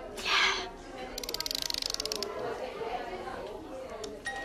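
Small wind-up music box being wound by its key: a fast, even run of ratchet clicks lasting about a second, after a short hiss near the start.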